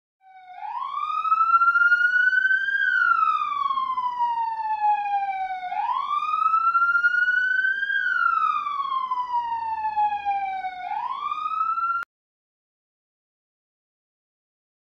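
Ambulance siren wailing: one tone that slowly rises and then falls, about two and a half times over, and cuts off suddenly near the end.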